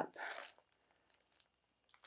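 A brief crinkle of a plastic packaging bag being handled, about half a second long at the start, then near silence.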